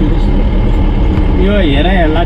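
Pickup truck's engine and road noise heard from inside the cab while driving, a steady low rumble. A man's voice comes in over it near the end.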